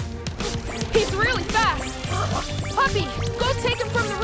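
Animated-cartoon chase music with a pulsing bass beat, over which a cartoon character gives a run of short, squeaky chirping cries that rise and fall in pitch, starting about a second in.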